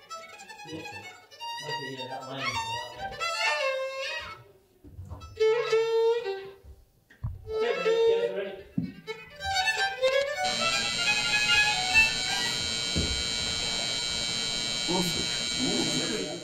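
Fiddle playing short phrases with gaps between them. About ten seconds in, a steady, dense sustained sound with many held tones takes over and holds at an even level.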